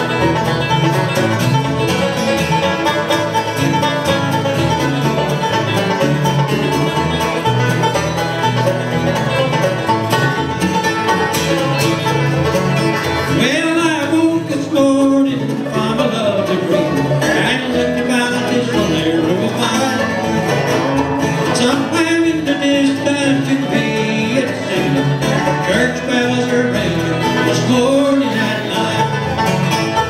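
Bluegrass band playing live at a steady, full level, opening a song: banjo, acoustic guitar, mandolin, fiddle, dobro and upright bass together.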